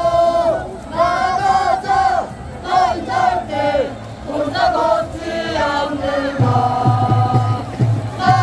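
Football supporters' crowd chanting and singing in unison. A deep, steady beat joins in near the end.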